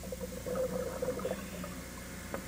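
Muffled underwater bubbling and gurgling, irregular and faint over a background hiss.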